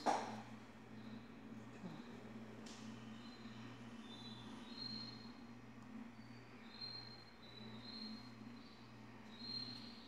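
Faint background hum that pulses evenly a little more than once a second, with short, faint high chirps now and then.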